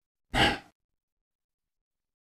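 A single short, sharp breath from a person's voice, about a third of a second in.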